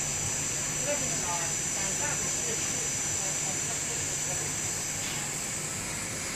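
FY800J heated-blade fabric slitter rewinder running steadily as it winds slit ribbon onto rolls: a low hum under a high hiss with a thin, steady high whine.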